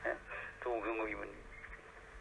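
Speech only: a man preaching in Urdu, a short phrase in the first second or so, then a pause.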